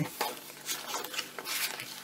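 Paper rustling and scraping as layered paper pages of a handmade journal are handled, in a run of short brushing sounds, while a card is slid out of a kraft-paper pocket.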